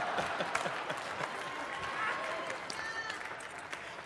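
A live audience applauding and laughing in reaction to a joke; the clapping slowly dies away over the few seconds.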